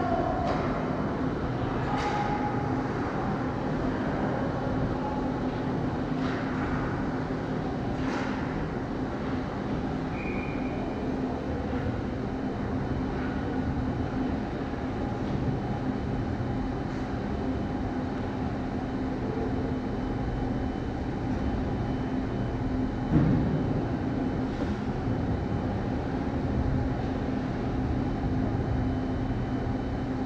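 Ice rink ambience during a hockey game played at the far end: a steady low machinery hum with faint scattered knocks of sticks and pucks, and one dull thump about three-quarters of the way through.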